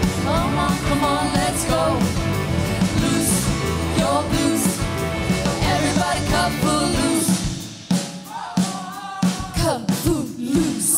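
Live pop-rock band, with drum kit, electric guitars, bass and keyboard, playing behind lead singing. About seven seconds in the bass and low end drop away, leaving the voice over lighter accompaniment.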